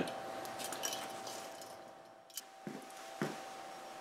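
Quiet room tone with a faint steady hum, and a few faint clicks and knocks between about two and a half and three and a quarter seconds in.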